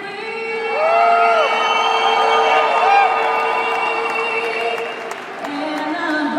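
A female soloist singing the national anthem holds one long note over the arena sound system while the crowd cheers and whoops; near the end she moves on to new notes.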